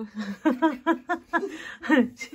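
A woman laughing, a long run of short 'ha' sounds at about four a second.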